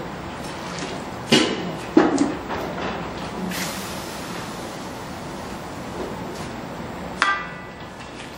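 Kitchen utensils knocking on metal cookware: two sharp knocks in the first two seconds, then a louder metallic clank with a short ring near the end, over a faint steady background noise.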